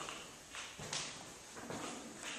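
Footsteps on a tile floor: a series of light steps.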